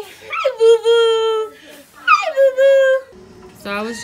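A baby vocalizing: two long, high-pitched squeals, each starting with a quick rise and then held steady. A woman's voice comes in briefly near the end.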